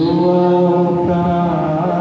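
Male voice singing long, held notes into a microphone, accompanied by an acoustic guitar.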